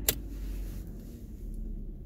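Skoda Octavia engine idling steadily just after being started, a low rumble, with a single sharp click about a tenth of a second in.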